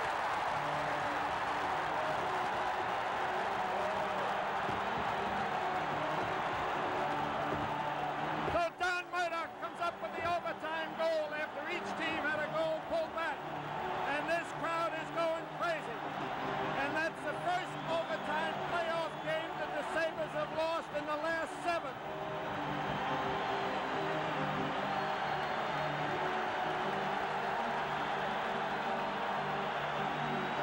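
Arena crowd cheering and roaring after a goal, with music playing underneath. From about a third of the way in to about three-quarters through, a voice rises over the crowd.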